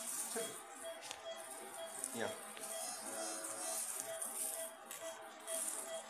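Patient monitor beeping at a quick, regular rate with the pulse, over a steady high hiss. A brief word is spoken about two seconds in.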